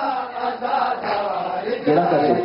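Men's voices chanting a nauha, a Shia mourning lament, unaccompanied.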